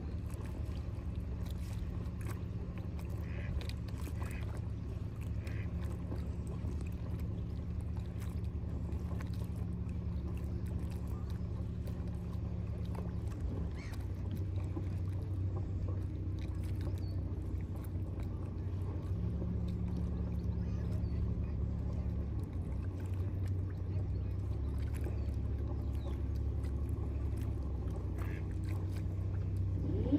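Low, steady hum of motor-boat engines on the river, the tone shifting a couple of times as the engine note changes.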